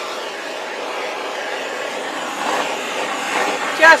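Steady rushing hiss of a handheld butane torch played over wet acrylic paint to pop bubbles and bring up cells. A short spoken word comes near the end.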